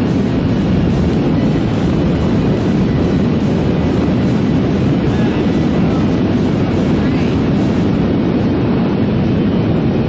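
Steady rush of wind over a camera microphone during a parachute descent under an open canopy, a low, even noise with no break.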